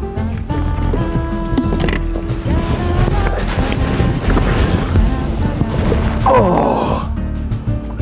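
Background music with held tones and a steady bass. A rushing noise builds through the middle and ends in a downward sweep about six seconds in.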